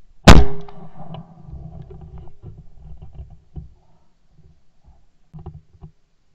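A single very loud shot from a 12-gauge Yildiz Elegant A3 TE Wildfowler side-by-side shotgun, picked up by a camera mounted on the gun, about a third of a second in. It is followed by a couple of seconds of low rumble and handling knocks, and a few light knocks near the end.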